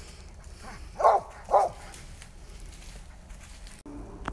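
Squirrel dog barking twice at a tree, two short barks about half a second apart: the dog is barking treed, signalling a squirrel up the tree.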